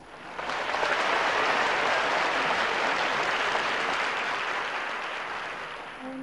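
Studio audience applauding, rising within the first second and then slowly tapering off.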